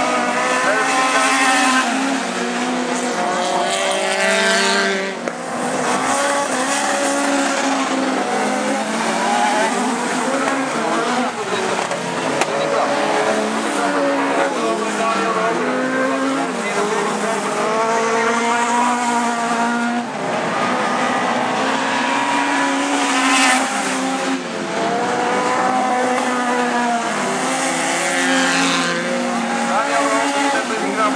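Several four-cylinder autocross race cars running hard around a dirt track, their engines revving up and down through the gears as they pass, several pitches overlapping at once.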